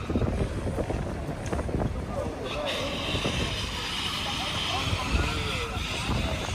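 A Bentley Bentayga SUV moving slowly past, its low engine and road rumble mixed with crowd chatter and wind on the microphone. A steady hiss joins in from about two and a half seconds in until near the end.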